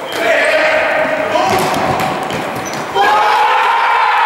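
Futsal players and onlookers shouting in an echoing indoor sports hall, with the ball being kicked on the court. About three seconds in a loud, long shout goes up as a goal is scored.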